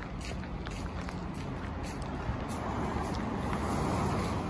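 City street traffic noise, a steady rumble of passing cars that swells slightly near the end.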